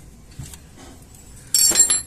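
A sharp metallic clink about one and a half seconds in, with a brief high ringing: a steel tool knocking against the metal brake caliper. Before it there is only faint handling noise.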